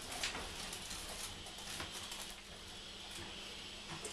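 Faint steady hum and low background noise inside a lift car standing at the floor, with a few light clicks.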